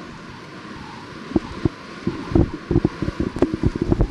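Steady hiss of an old analogue lecture recording. From about a second and a half in comes a quickening run of soft, low knocks and bumps close to the microphone.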